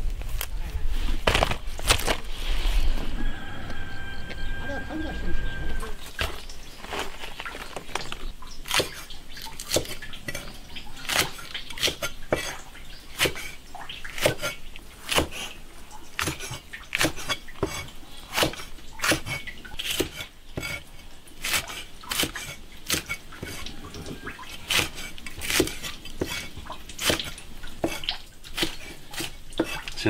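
Cleaver chopping chilies on a wooden board: sharp knocks, irregular, about two a second, starting about six seconds in. Before that, a low rumble.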